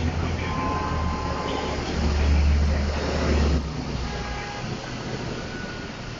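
Loud outdoor noise with a heavy low rumble that drops away about three and a half seconds in, over a steady hiss.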